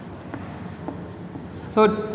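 Chalk writing on a chalkboard, with a few light taps of the chalk against the board.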